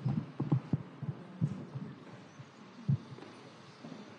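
A handheld microphone being handled: irregular dull low thumps, several close together in the first second, then two more spaced out, over faint room hiss.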